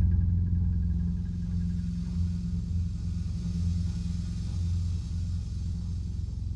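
Background music: a low, steady rumbling drone with no melody.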